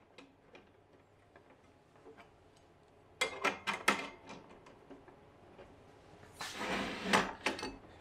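Metal work stop being fitted to the work stop bar of a Castle 110 pocket cutter. A few sharp clicks and knocks come about three seconds in, then a short scraping rattle with clicks near the end.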